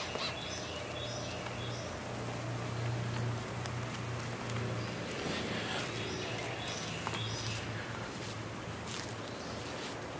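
Backyard ambience: small birds give short chirping calls several times over a steady low hum, with a fast, even, high-pitched ticking throughout.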